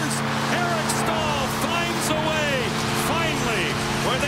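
Arena goal horn sounding one long, steady chord over a cheering crowd, the signal of a home-team goal.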